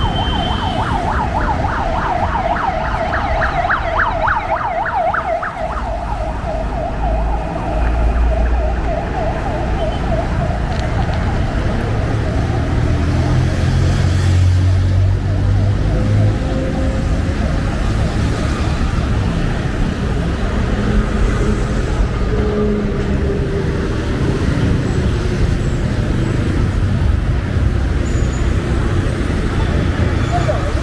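Road traffic with a siren warbling fast for the first few seconds, fading out about six seconds in. After that comes the steady sound of cars and motorbikes, with a heavier engine passing close about halfway through.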